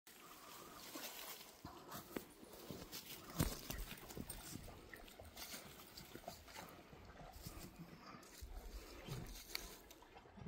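Faint footsteps crunching and rustling through dry fallen leaves on a dirt trail, a string of irregular crackles with one louder knock about three and a half seconds in.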